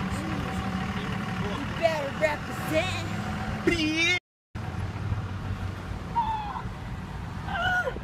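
Raised, wavering voices shouting in short bursts over the steady low hum of a car, heard from inside the cabin. The sound drops out completely for a moment a little past halfway, then the hum and voices resume.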